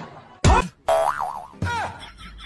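Cartoon comedy sound effects: a short thud about half a second in, then a wobbling boing that swings up and down in pitch, and a second, shorter boing that falls away near the end.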